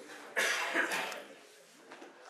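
A cough about a third of a second in, fading out within about a second.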